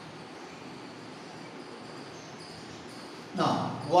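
Faint chalk writing on a chalkboard over a steady low room hiss, then a man's voice starts loudly near the end.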